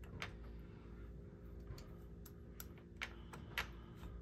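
Light metallic clicks and taps, about half a dozen spread unevenly, as small steel washers and a nut are handled and fitted on a threaded bolt at the ball joint. A faint steady hum runs underneath.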